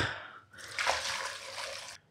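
Stock poured from a cast iron casserole into a slow cooker's ceramic inner pot: a steady pour of liquid splashing into the pot, starting about half a second in.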